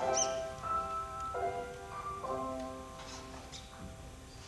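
Piano playing slow, sustained chords that change about once a second, growing softer near the end: the accompaniment leading into a tenor's song.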